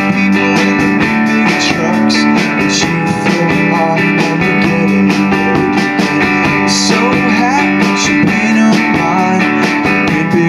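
Live rock band playing: a strummed electric guitar over a drum kit keeping a steady beat with cymbal hits.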